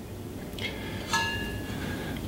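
Refrigerant cylinder's hand valve being opened: a short hiss with a thin whistling tone as gas rushes into the tank adapter, starting about half a second in, loudest around a second in, then fading.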